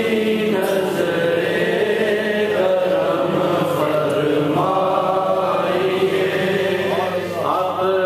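A man reciting a naat unaccompanied: a single male voice chanting long, drawn-out notes that slide from one pitch to the next, with a short break for breath near the end.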